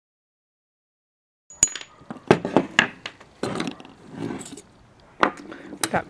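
Small hammer tapping a steel pin punch to drive out the pin that holds the end cap, safety and trigger of a Mars 86 air rifle: about six or seven sharp metallic taps at an uneven pace, starting about a second and a half in, the first one ringing briefly.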